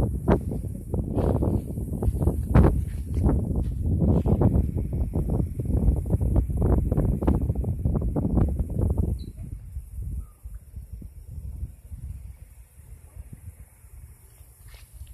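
Wind buffeting the phone's microphone in loud, irregular gusts, dying away about nine seconds in and leaving only a faint hiss.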